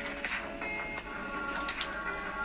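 Background music with sustained notes and a recurring beat, and a quick run of three sharp clicks about three-quarters of the way through.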